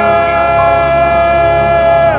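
Male singer holding one long, steady note at full voice over a sustained backing chord: the closing note of the song.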